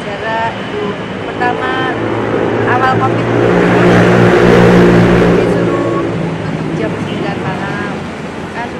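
A motor vehicle passing close by: its engine hum and road noise swell to a peak about four to five seconds in, then fade away.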